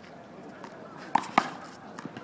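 Two sharp smacks of a rubber handball in play, about a second in and a quarter second apart.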